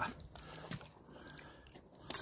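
Wooden spoon stirring a thick chicken curry in a stainless steel stockpot: faint, with a few light clicks and scrapes.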